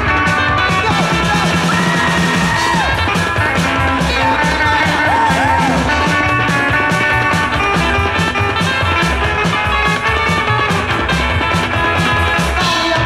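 Psychobilly band playing an instrumental break: lead electric guitar with bending notes over a fast, driving bass and drum beat.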